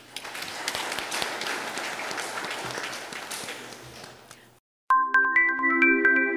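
Audience applauding at the close of a speech, the clapping fading away over about four seconds. After a brief silence, a bright chiming electronic jingle over held chords starts suddenly near the end.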